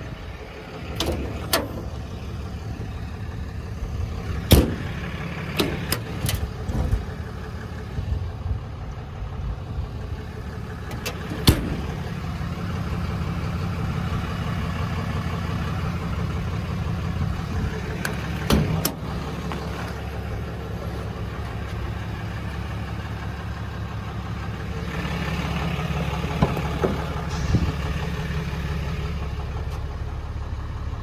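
6.7 Cummins turbo-diesel straight-six of a 2011 Ram 3500 idling steadily, with a scattering of short sharp knocks and clicks over the idle.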